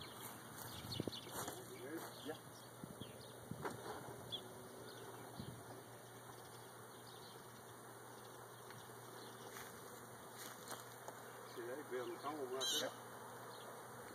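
Faint, quiet outdoor sound with the low steady hum of a honeybee swarm, a few brief soft noises and a short murmured word near the end.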